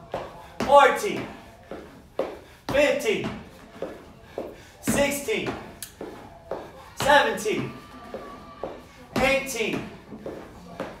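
A man's short, voiced, effortful exhalations during kettlebell step-ups, five of them about every two seconds, each falling in pitch. Each one begins with a sharp thud as a foot lands on the step platform.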